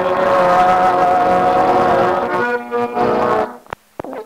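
Accordion closing a Serbian folk song: a long held chord, then a few shorter chords, and the music stops about three and a half seconds in, followed by a single click.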